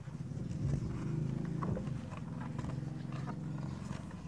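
A steady low hum fills the background, with a few faint light taps and rustles of a picture book's pages being handled and turned.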